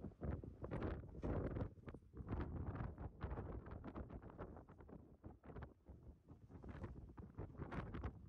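Wind buffeting the microphone on the forward balcony of a cruise ship under way, in irregular gusts that rise and fall.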